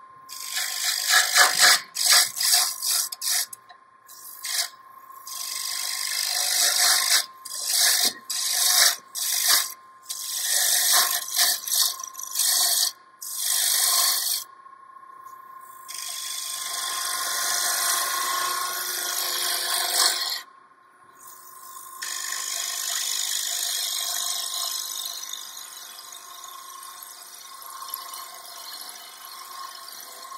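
A turning gouge cutting a spinning wood blank on a lathe: a hissing scrape in a quick run of short passes, then longer unbroken cuts from about halfway through, with a faint steady tone underneath.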